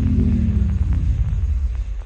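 The end of the song's beat slowing down: its low pitched sound slides steadily lower and lower and fades out near the end, a tape-stop slowdown.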